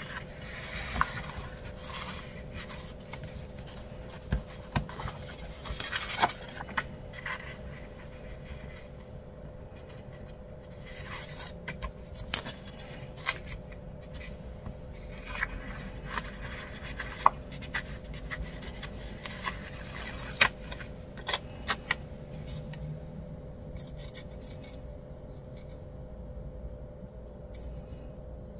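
Paper handling: sticker-book pages rustling and turning and a sticker being peeled from its sheet, with scattered small sharp clicks and taps of paper against the planner.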